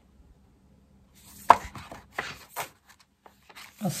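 Sheets of a scrapbooking paper pad being flipped over by hand: a few crisp paper rustles and snaps, the sharpest about a second and a half in.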